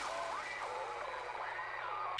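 A steady hiss with faint pitched sounds wavering up and down beneath it.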